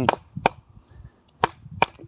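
A wooden club knocking three times on the poll of a hatchet whose blade is set in a short birch log, driving it down to split the wood for kindling. The sharp knocks come about half a second in, then twice close together near the end.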